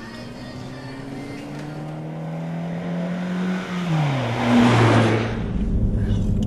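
Car engine climbing slowly in pitch, then dropping sharply in pitch as it rushes past with a swell of noise, giving way near the end to a low, steady engine rumble.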